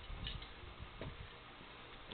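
Soft low thuds and a couple of light clicks from a person moving close by and handling a tool at the pinsetter, with a thud near the start and another about a second in.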